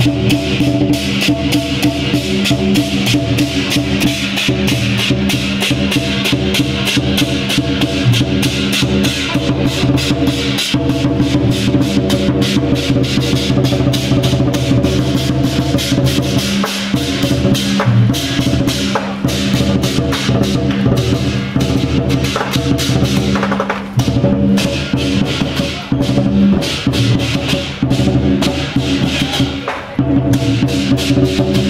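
Chinese lion dance accompaniment: a big drum and crashing cymbals beating fast and without pause over steady sustained tones.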